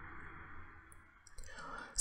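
Faint room hiss with a few soft clicks, likely the speaker's mouth, and a short intake of breath near the end, just before speech resumes.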